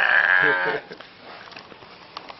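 A man's high, quavering laugh, lasting under a second.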